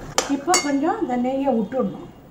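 Slotted steel spatula knocking twice against the side of the pan while stirring a thick dough: two sharp metal clinks, about a third of a second apart.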